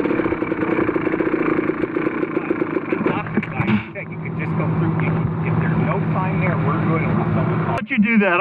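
A dirt bike engine idling, its note shifting lower about four seconds in.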